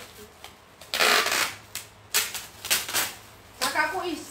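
Rustling of clothing being handled, in a few short bursts of noise, with a woman's voice starting just before the end.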